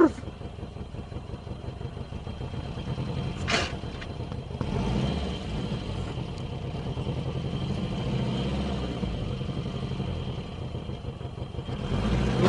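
Car engine running, heard from inside the cabin: a steady low rumble, with a single brief knock about three and a half seconds in.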